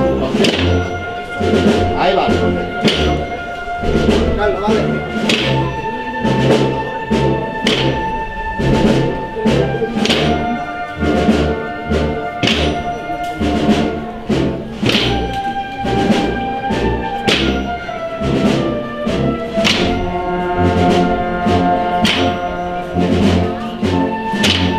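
Wind band (banda de música) playing a processional march: held brass and woodwind melody over a pulsing bass line, with a steady drum beat.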